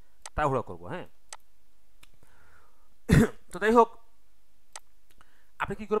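Short bursts of speech, separated by pauses that hold a few faint sharp clicks.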